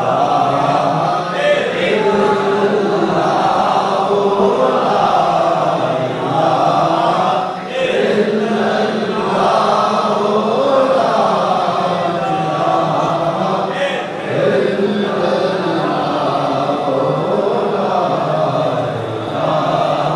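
Many men's voices chanting together, a devotional chant that keeps going with two short breaks.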